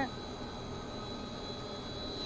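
Steady hum of running electric-motor-driven pumps, with a thin, steady high-pitched whine over it.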